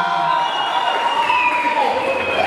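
Crowd cheering for a fighter's introduction, with several whistles and drawn-out shouts held and gliding slowly in pitch over the crowd noise.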